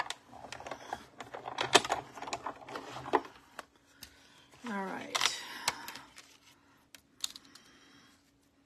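Clear plastic cutting plates and a metal die being handled and set onto the platform of a manual die-cutting machine: a run of quick plastic clicks and clacks, thinning out after the first few seconds, with a few more clicks near the end.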